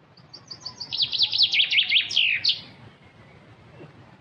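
A small songbird singing one phrase of about two and a half seconds: a quick run of sliding notes that speeds up and falls in pitch, then stops.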